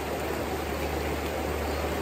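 Shallow river flowing steadily over rocks, a constant even rush of water from the riffles.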